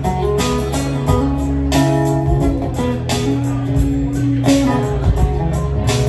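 Acoustic guitar strummed in an instrumental passage with no singing, over a steady low bass.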